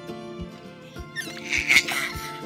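Background music with a steady beat. Near the end, a baby's short, loud, high-pitched squeal of laughter.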